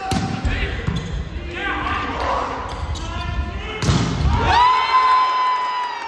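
A volleyball jump serve struck with a sharp smack, shouting voices through the rally, a second hard hit on the ball a little before four seconds, then one long held shout of celebration.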